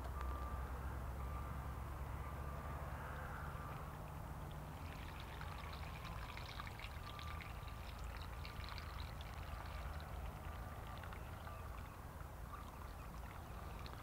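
Dyed water poured from a plastic measuring pitcher through a funnel into a plastic infusion bag: a faint trickling and splashing that starts about a third of the way in.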